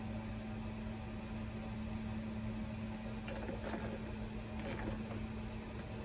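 Steady low mechanical hum, with a few faint clicks about three to five seconds in.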